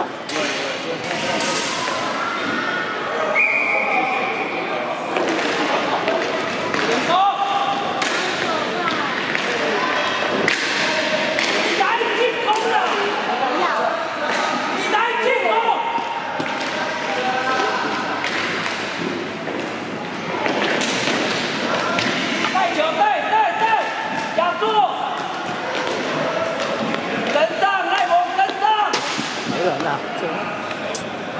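Inline hockey play on a wooden court: irregular clacks and thuds of hockey sticks and skates on the floor and knocks against the rink boards, scattered through the whole stretch.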